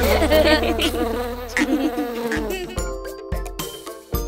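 A cartoon bee's buzzing sound effect, a wavering buzz over a held low note that stops about halfway through. It then thins out to a few short tones and taps.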